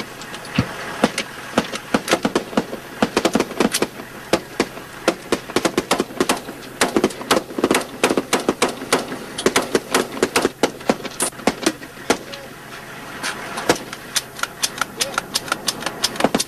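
Rapid, irregular rifle fire from several shooters at once, the shots overlapping at several a second, with a brief thinning about twelve seconds in.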